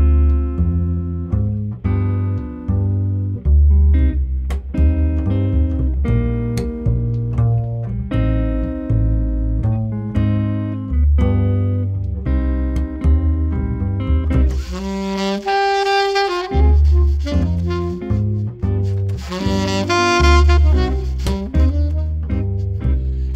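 A trio of alto saxophone, guitar and plucked double bass playing a slow jazz arrangement. Guitar chords and a walking double bass line open the piece. About fourteen seconds in, a brighter, fuller lead line comes in on top, most likely the saxophone taking the melody.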